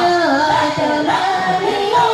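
Unaccompanied devotional chanting of a manaqib recitation, sung in long, wavering held notes.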